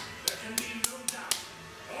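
One person clapping, five sharp hand claps in the first second and a half, about three a second.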